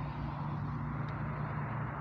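Steady outdoor background noise with a low, steady hum that stops shortly before the end.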